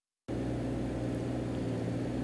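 Dead silence for a moment at the edit, then a steady low mechanical hum with a low rumble underneath.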